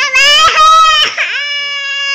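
A toddler crying: a loud, high-pitched wail that breaks off briefly about a second in, then resumes as one long, steady cry.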